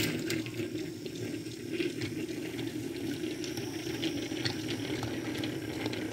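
Battery-powered toy train engine running steadily along a tiled counter, its small motor and gears whirring, with scattered light clicks.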